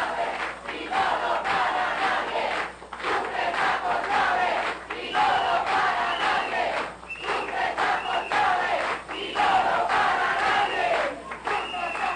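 A crowd chanting a slogan in unison, the same phrase repeated about every two seconds.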